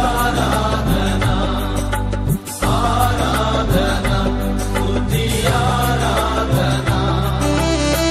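Telugu Christian worship music with a melody over a steady bass and drum beat, with a short break about two and a half seconds in.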